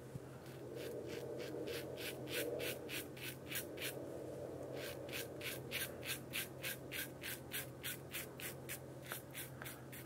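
QSHAVE short-handle double-edge safety razor scraping through lathered stubble on the chin and neck in short, quick strokes, about three a second. The razor is not gliding smoothly.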